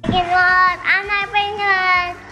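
A young girl singing in a high voice, with long held notes broken by short pauses.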